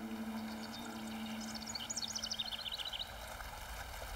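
Birds twittering: a quick run of short high chirps through the middle, over a faint held low note that fades out.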